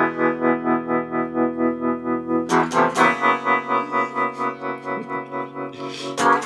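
Electric guitar played through a Yamaha amp's tremolo effect: a sustained chord whose volume pulses evenly about three times a second. It is struck again about two and a half seconds in and rings on to near the end.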